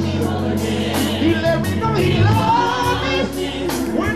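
Live gospel song: a male lead singer and backing choir voices over a band's steady bass and drum kit.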